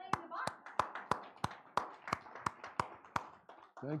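Steady rhythmic hand clapping, about three claps a second, ten claps in all.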